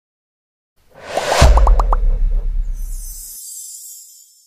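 Channel-intro sound effect: a rising whoosh about a second in hits a deep bass boom with a quick run of short blips, and the boom's rumble fades out. A high shimmer comes in near the end and fades.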